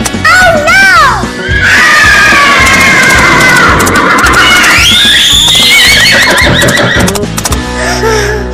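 Horse whinnying: long, trembling neighs, with a higher one starting about five seconds in, over background music.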